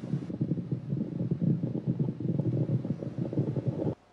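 An osteoarthritic knee joint heard through an electronic stethoscope as the leg bends and straightens. It gives a terrible noise: a dense, continuous run of low crackling and grating that cuts off suddenly near the end. This is the grinding of worn joint surfaces in osteoarthritis.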